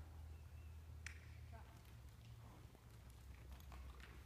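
Near silence: a low steady hum with a few faint, irregular soft knocks, the hoofbeats of a horse trotting on soft arena dirt.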